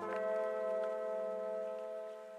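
Background music: one held chord of several steady notes, without a beat, fading slightly near the end.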